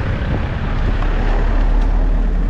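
Road traffic noise: a vehicle passing close by, a steady rumble that grows slightly louder toward the end.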